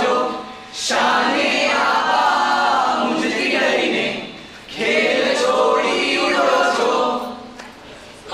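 A group of voices singing together unaccompanied, in three phrases with short breaks about a second in and near the middle, fading out just before the end.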